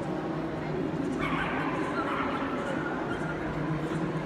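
A dog cries out for over a second, starting about a second in, over the steady murmur of a crowded hall.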